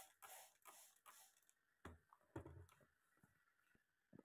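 Near silence, with a few faint clicks and soft low bumps, two of them about two seconds in.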